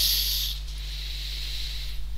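Steady low electrical hum in the recording. A short burst of breathy hiss comes right at the start and fades within about half a second.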